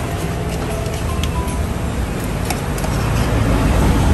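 Road traffic passing close by: a low engine rumble that grows louder toward the end, with a few faint light clicks.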